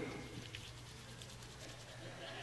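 Faint crinkling and rustling of a paper $20 bill being folded and crushed in the hands, over a low steady hum.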